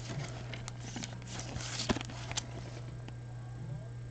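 Soft clicks and rustles of a trading card and a clear rigid plastic card holder being handled by gloved hands, mostly in the first half, over a steady low hum.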